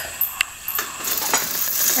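Handling noise from the camera being moved and adjusted: a few light clicks, the sharpest less than half a second in, with soft rustling between them.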